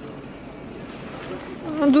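Steady background hum of a large warehouse store, then a woman starts speaking near the end.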